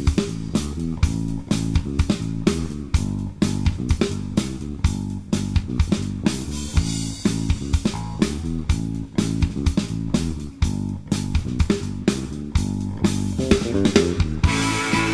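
Blues-rock band playing an instrumental intro: an electric bass line carries the tune over a steady drum-kit beat, with electric guitar.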